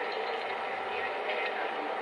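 Steady background ambience from a model train's onboard sound system, an even hiss between recorded boarding announcements, with no voice in it.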